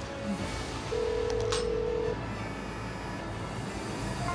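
A single steady telephone ringing tone lasting just over a second, starting about a second in, over soft background music, with a brief click partway through.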